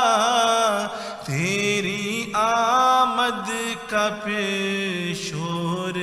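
A man's solo voice chanting an Islamic prayer in long, wavering melodic phrases, pausing briefly about a second in and again near four seconds.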